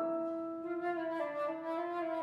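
Concert flute playing a slow phrase of sustained low notes, moving to a new pitch a few times.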